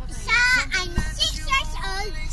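A young girl singing a few high, held notes that glide in pitch, over the steady low rumble of a car cabin on the move. A single short knock about a second in.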